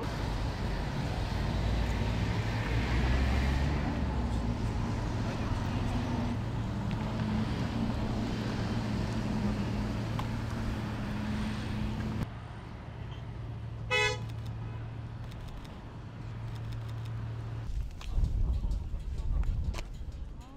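Diesel locomotive engine running steadily with a low hum as it moves the rocket's rail transporter. About two-thirds of the way through there is a single short horn toot, and a louder rumble near the end.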